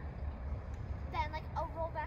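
A person talking in the second half, not clearly made out, over a steady low rumble.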